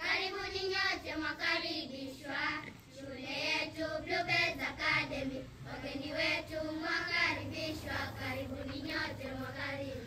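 A group of schoolchildren singing together.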